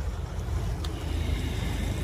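Street traffic: a steady low rumble of vehicle engines running nearby, with a single sharp click just under a second in.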